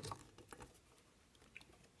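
Near silence: room tone with a few faint short clicks in the first half-second.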